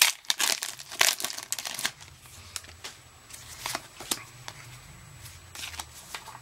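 Foil wrapper of a Pokémon TCG Primal Clash booster pack being torn open and crinkled by hand, loudest in the first two seconds, then fainter, scattered crinkles as the pack is worked open and the cards come out.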